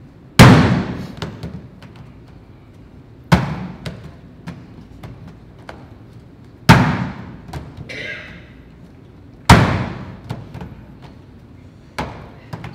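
Rope of noodle dough slammed onto a stainless-steel table four times, about every three seconds, each a heavy thud with a ringing tail. The slamming loosens the dough and makes it easier to stretch, an early stage of hand-pulled noodle making.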